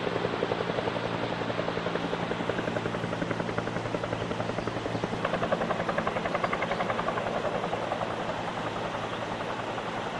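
Helicopter rotor beating steadily overhead, a fast, even pulse that holds at the same level throughout.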